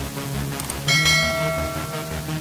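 Notification bell sound effect of a subscribe animation: a single bright bell ding about a second in, ringing out and fading, over background music.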